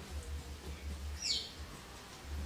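A single short, high chirp falling in pitch about a second in, like a small bird's call, over a low steady hum.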